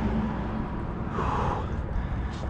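A person's short breathy exhale about a second in, over a steady low rumble.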